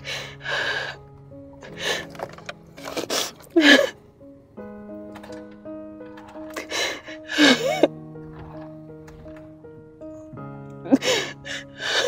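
Slow background music of held chords, with a woman sobbing in several loud bursts through it.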